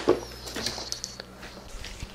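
Faint rustling and light clicking of small electronic parts being handled and set down in a cardboard box.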